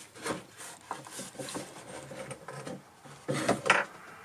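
Perforated back panel of a Cossor 524 valve radio being worked free and lifted off the cabinet: a run of light scrapes and small knocks, with two louder scuffs a little after three seconds.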